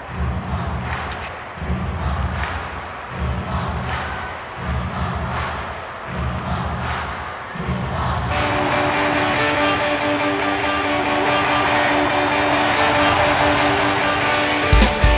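Rock music from a stage musical. A heavy low beat pulses about every second and a half, then about eight seconds in a big sustained chord rings out and is held.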